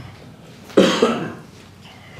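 A person coughing once, in two quick bursts, about a second in.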